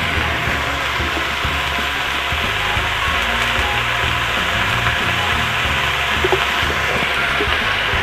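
Pumpkin pieces frying in oil in a wok over a wood fire, giving a steady sizzle.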